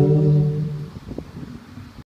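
Live music ending on one held final chord that stops about a second in, leaving faint outdoor background noise.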